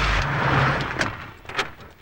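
A car passing by in the street, its sound swelling and then fading over the first second or so, followed by a couple of sharp clicks.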